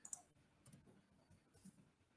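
A few faint computer keyboard clicks as text is typed, the sharpest just after the start and a couple of softer ticks later.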